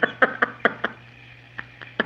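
A woman's stifled laughter through a tissue: a quick run of short breathy bursts, about five a second, for the first second, then a few faint clicks.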